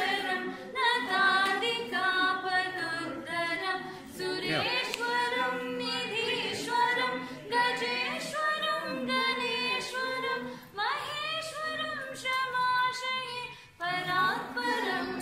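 A woman singing unaccompanied, in long held notes that glide between pitches, with short breaks between phrases.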